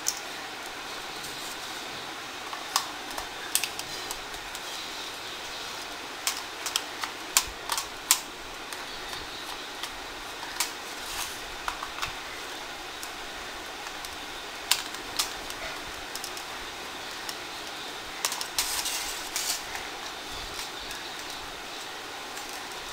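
Sharp plastic clicks and taps, irregular and in small clusters, as the plastic handle of an electric mosquito bat is handled and pried apart by hand, over a steady background hiss.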